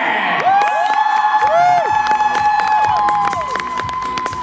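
Crowd cheering, with several voices holding long, high-pitched calls that overlap and rise and fall at their ends, and scattered sharp claps from about halfway through.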